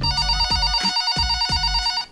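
Office desk telephone ringing with an electronic ring, a steady chord of high tones.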